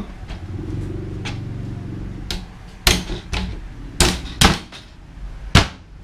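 Sharp wooden knocks, about six of them spread over three and a half seconds, as the slatted hardwood base of a baby bed is pushed down and settles onto its frame brackets. A low hum runs under the first two seconds.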